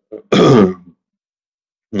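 A man clearing his throat once, a short loud burst about a third of a second in, followed by silence.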